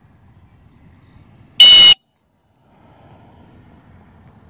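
A single short, loud blast on a dog-training whistle, about one and a half seconds in: a stop signal to a retriever swimming on a blind retrieve, before it is cast "Back".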